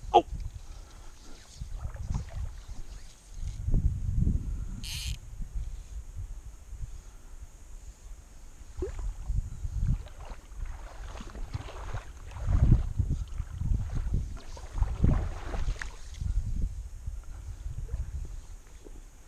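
Shallow river water sloshing in uneven low surges as someone wades through it, strongest about 4 s in and again around 12 to 16 s.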